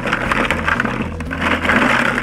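Dozens of small plastic canisters clattering and rattling against each other and a plastic bucket as a hand stirs through them to shuffle them.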